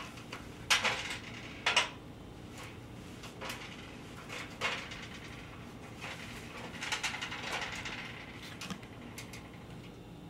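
Sharp metallic clinks and knocks from a stepladder being climbed and the hanging steel rod being handled. There are two loud ones in the first two seconds, a softer one near the middle, and a quick run of them around seven seconds in.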